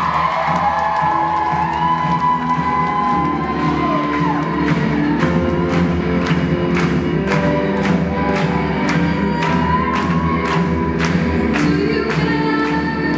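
A live rock band playing: drum kit, bass, electric guitar and keyboard under a girl's sung vocal with held, gliding notes. About four seconds in, the drums settle into a steady beat of about two strokes a second.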